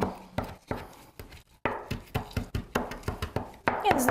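Kitchen knife chopping lime zest finely on a cutting board: a run of quick, irregular taps, about four or five a second.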